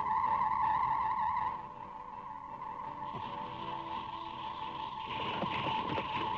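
Steady high-pitched electronic tone blaring from a large loudspeaker horn, the sound signal broadcast to draw the giant locusts. It is loud for the first second and a half, then carries on softer, with a hissing buzz joining about three seconds in.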